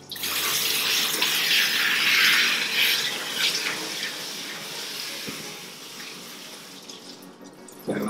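Water spraying from a handheld hose nozzle over a wet cat's coat and onto the grooming tub while rinsing out shampoo; a steady hiss, loudest in the first few seconds and growing gradually fainter after that.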